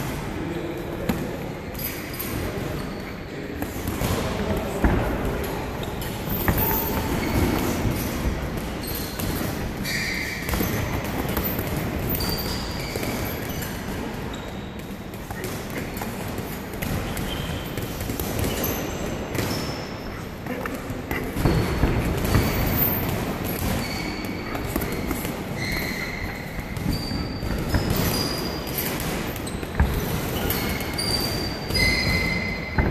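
Boxing sparring in a ring: footsteps shuffling on the canvas with short, scattered sneaker squeaks and irregular thuds of gloved punches landing.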